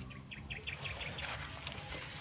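A small bird calling: a quick run of about eight short, high chirps in the first second or so, then quieter.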